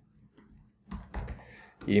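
Computer keyboard being typed on: a short, quick run of keystrokes about a second in, typing a single word.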